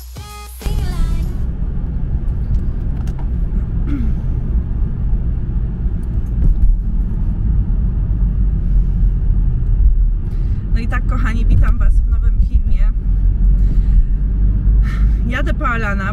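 Steady low road and engine rumble heard inside a moving car's cabin, starting abruptly about half a second in as music cuts off. A voice speaks briefly twice in the second half.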